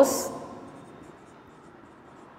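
Faint scratching of a marker pen writing words on a whiteboard, in short strokes.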